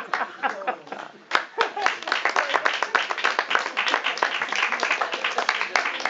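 An audience applauding, a dense clatter of many hands clapping that starts about a second in, after some voices.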